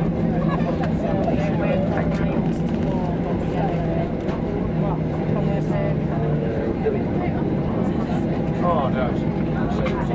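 Cabin noise inside a Boeing 737 taxiing after landing: a steady rumble of the jet engines and airflow, with a low hum that stops about six and a half seconds in, under passengers' chatter.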